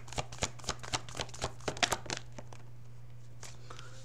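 A deck of tarot cards shuffled by hand: a quick run of sharp card snaps and slaps for about two and a half seconds, then a few single taps near the end as a card is drawn and laid down. A steady low hum runs underneath.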